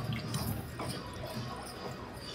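Low background hum of a casino room with a few faint taps as playing cards are turned over on a baccarat table's felt.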